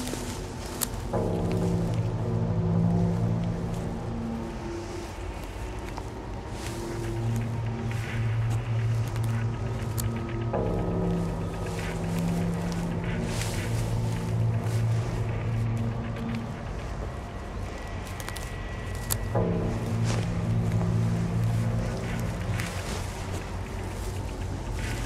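Tense film score: low sustained notes, with a new swelling phrase about every nine seconds and a few sharp clicks.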